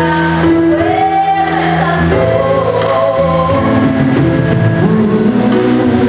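A girl singing a song into a microphone, accompanied by a Casio electronic keyboard, with long held notes and gliding vocal lines over the steady keyboard chords.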